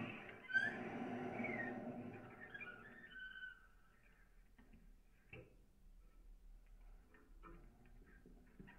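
Quiet free improvisation on tenor saxophone and cello. For about the first three seconds there are thin sliding squeals over a low hum. The playing then drops almost to silence, leaving only scattered faint clicks and small scratches.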